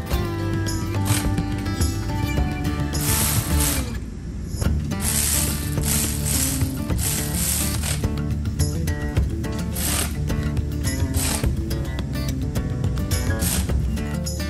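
Cordless ratchet running in several short bursts, driving nuts down onto studs, over background guitar music.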